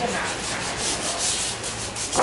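Repeated rubbing strokes of ebony (mun hoa) furniture wood being sanded by hand during finishing.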